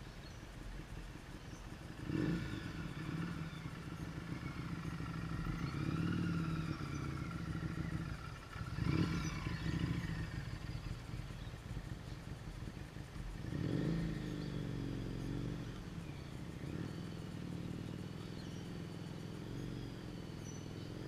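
A motorcycle engine at low speed, rising and falling in pitch with the throttle as the bike circles. It is loudest as the bike passes close about halfway through.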